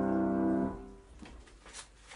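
Grand piano's closing chord, held and then cut off by the dampers about two-thirds of a second in, its hum dying away. Faint rustling of sheet music being handled follows.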